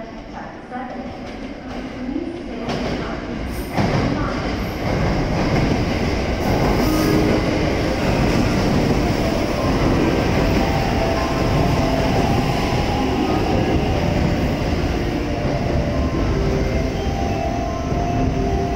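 683-series electric limited-express train arriving at a platform. Its rumble and wheel noise rise sharply about four seconds in as the cars reach the microphone, then hold steady as the train rolls past, slowing to stop.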